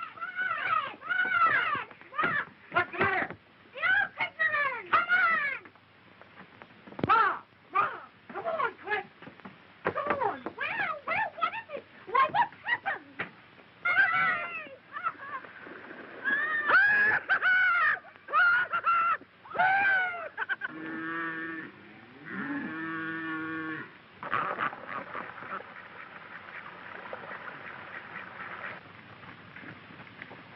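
Many short excited shouts and whoops from several voices, then two longer held calls. After that comes a steady rushing hiss of water let loose down the channel.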